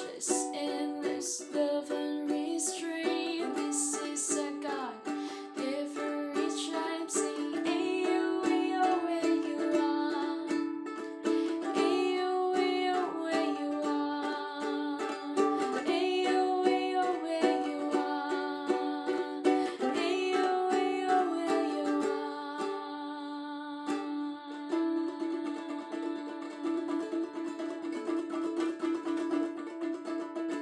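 A ukulele strummed in chords with a woman singing along, the singing dropping out about two-thirds of the way through while the strumming carries on to a held final chord.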